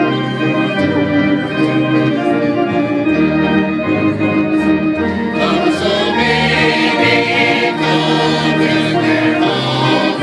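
Church choir singing a gospel hymn in parts over a keyboard accompaniment with a moving bass line. The voices come through stronger about halfway through.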